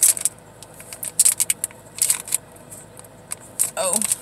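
A makeup brush set's case being handled and opened: a few short clicks and rustles, spaced about a second apart.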